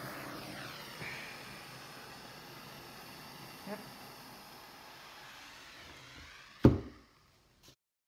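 Steady hiss of a handheld torch flame being passed over wet resin, fading over several seconds. Late on, one sharp, loud knock, then the sound cuts off abruptly.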